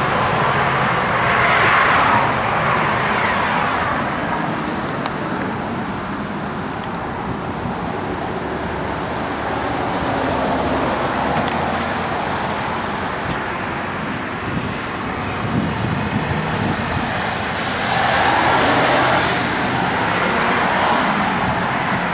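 Steady road-traffic noise with a low running hum, swelling twice as vehicles go by: once about two seconds in and again near the end.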